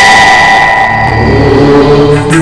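Headline-bulletin theme music: a steady high note held through, with low bass notes joining about halfway, in a break from the tabla rhythm that surrounds it.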